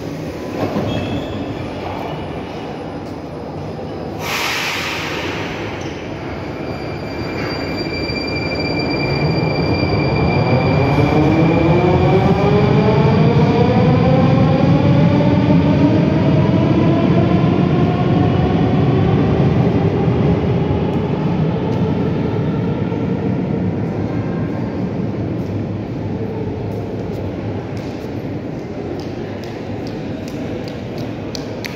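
Metro train pulling out of the station. A short burst of air hiss comes about four seconds in. Then the traction motors' whine rises in pitch as the train accelerates away, growing loudest midway and then fading.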